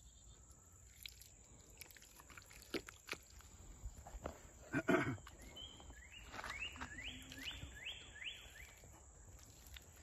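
Bare hands pressing and working wet clay, with soft wet squelches and pats and one louder squelch about halfway through. Near the end a bird sings a quick run of about seven rising notes.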